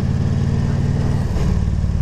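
Victory motorcycle's V-twin engine running on the road in second gear, its note dropping a little over a second in.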